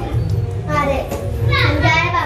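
A young child's voice over background music.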